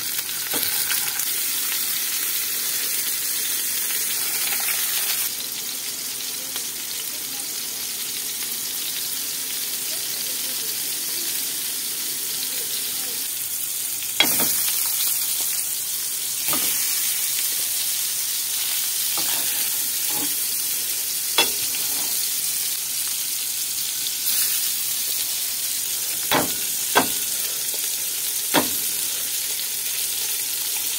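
Meat patties frying in hot oil in a steel pan, a steady sizzle throughout. From about halfway on, a handful of sharp clicks of a metal spatula against the pan as the patties are turned, several close together near the end.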